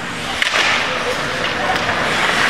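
Ice hockey skates scraping and carving the ice during play, with a sharp click about half a second in.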